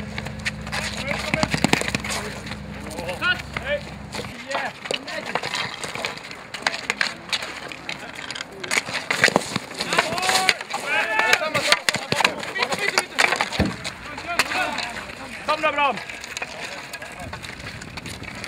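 Wooden street hockey sticks clacking against a plastic ball and the asphalt in repeated sharp knocks, with players shouting during play.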